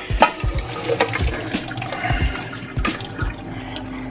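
Hot water pouring and splashing steadily from a stainless steel pot of boiled mixed vegetables into a stainless steel sink as the pot is drained.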